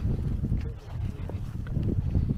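Footsteps knocking and crunching on streambed stones, with wind buffeting the microphone in a heavy, uneven rumble.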